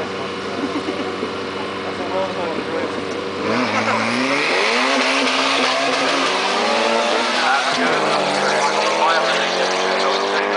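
Turbocharged Honda Integra Type R (DC2) four-cylinder engine held at steady revs on the start line, then launching hard about three and a half seconds in and revving up through the gears, with a hiss of tyres fighting for grip.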